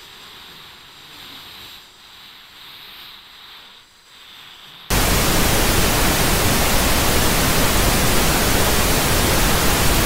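Faint hiss for about five seconds, then a loud TV-static sound (white noise) that cuts in suddenly and runs on steadily.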